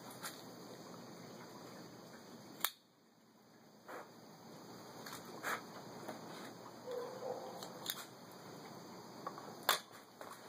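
A few sharp clicks over faint background, the loudest about two and a half seconds in and another just before the end: a cigar cutter clipping the cap of a cigar and the cigar being handled.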